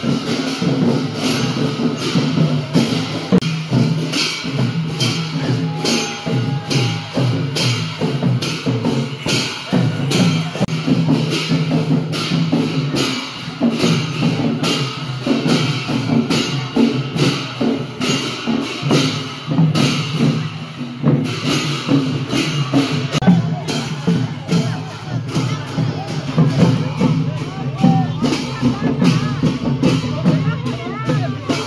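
Newar dhime drums playing a fast, steady beat with clashing cymbals, the rhythm for a Lakhe masked dance, about two to three strokes a second, with crowd chatter mixed in.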